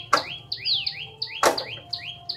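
A bird calling in a quick run of repeated high chirps, each sliding down and then up in pitch, about five a second. Two sharp knocks sound, one just after the start and one about a second and a half in.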